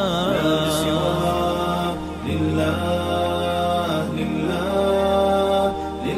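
An Arabic Islamic nasheed sung without instruments: a voice holding long, ornamented notes over a steady low drone.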